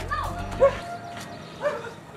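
A dog barking three short times, loudest on the second bark, over background music that stops a little under a second in.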